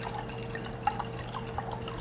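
White wine poured from a bottle into a glass wine glass: a faint trickle of liquid with a few small splashes.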